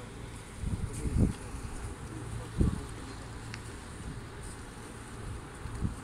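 Wind buffeting a phone's microphone outdoors: a steady low rumble with stronger gusts about a second in, again after two and a half seconds, and near the end.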